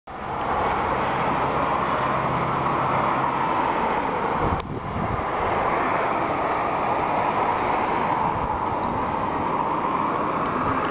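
Steady road-traffic noise, an even wash of sound with a low hum under it for the first few seconds and a brief dip about halfway through.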